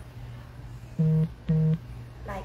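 An electronic device beeps twice: two identical short, low, steady beeps about half a second apart, over a steady low background hum.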